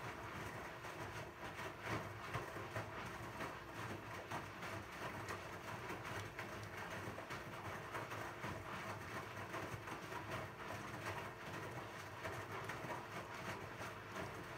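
Zanussi ZWF844B3PW front-loading washing machine tumbling a load of towels in water during a synthetics 60°C wash. Irregular swishing and soft knocks from the load over a steady motor hum.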